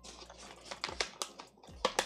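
A beef jerky snack pouch crinkling and crackling in the hand as fingers reach in for a piece, in a quick irregular run of small crackles with a sharper one near the end.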